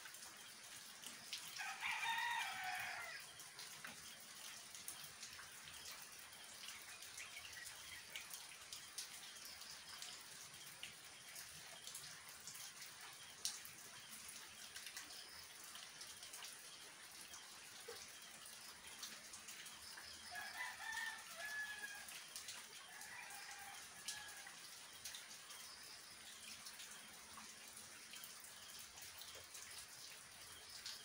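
Steady moderate rain falling on foliage and roofs. A rooster crows once, loudly, about two seconds in, and again more faintly around twenty seconds in.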